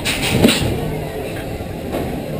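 Matterhorn Bobsleds roller-coaster sled rolling slowly along its track into the station, with a short burst of noise near the start that is loudest about half a second in.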